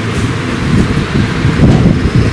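Loud, steady rumbling room noise on the camera's microphone, like wind buffeting, with no clear speech.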